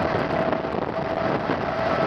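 CP 2000-series electric multiple unit running along the track, heard from an open window: steady wind on the microphone and rolling rail noise, with a steady high whine.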